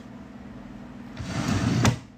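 A brief rustling, brushing noise close to the phone's microphone starting about a second in and ending in a sharp click, over a faint low steady hum.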